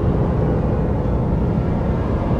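A low, steady rumble with no tune or voice in it.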